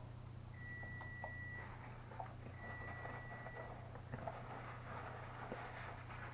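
Faint chewing and mouth sounds of a man eating a burrito, with small clicks and rustles, over a steady low hum. A thin, high, steady tone sounds twice, about a second each, in the first half.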